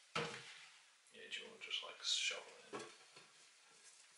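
Damp coco-fibre substrate tipped from a plastic tub into a glass terrarium: a thump as it first lands, then about two seconds of irregular knocks and rustles as it drops in and is pushed about.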